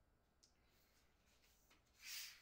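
Near silence: room tone, with a faint click about half a second in and another near the end, from a tripod being handled.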